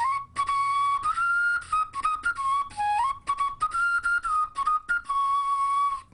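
A carrot flute, a carrot drilled into a wind instrument, played as a simple melody: short notes stepping up and down with brief breaks between them, ending on one long held note.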